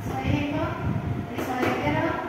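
A woman's voice speaking in short phrases over a constant low background rumble.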